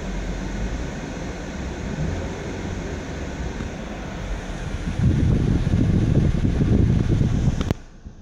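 Steady low rumble and hiss inside a parked car's cabin, growing louder about five seconds in, with a single sharp click near the end.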